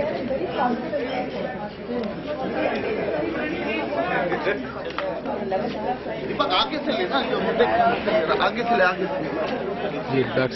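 Crowd chatter: many people talking at once in overlapping voices, with a few louder voices close by from about six seconds in.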